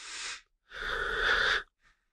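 A person's breath exhaled audibly into a close microphone, lasting about a second, with a softer breath tailing off the last word just before it.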